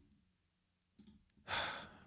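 A single breathy sigh, one exhale about one and a half seconds in that fades over half a second.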